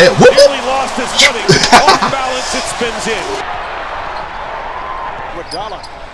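Basketball game audio from an NBA broadcast: a basketball being dribbled on a hardwood court, with arena crowd noise and voices underneath. The sound changes abruptly about three and a half seconds in.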